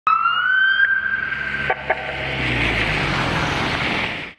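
Ambulance siren wailing, a single tone rising slowly, for about the first second and a half. It cuts off abruptly with two sharp knocks, and a steady rushing noise follows.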